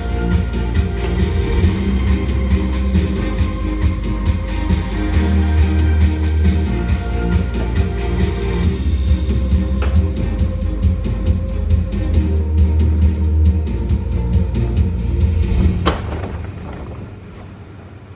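Music of a custom Tesla light show playing from the car, with a steady beat and heavy bass; it stops near the end, leaving only faint background.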